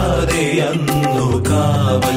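Music: a Malayalam Christmas carol song, a voice singing over instrumental accompaniment with a regular beat.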